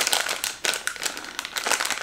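A printed plastic blind-bag packet crinkling as it is handled and opened, a quick irregular run of crackles.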